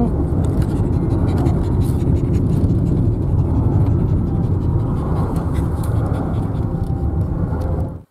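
Steady road and engine noise of a car driving at highway speed, heard inside the cabin: a continuous low rumble.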